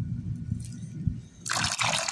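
A stream of water starts pouring into a small plastic pool about a second and a half in, a steady splashing hiss, after a low rumble.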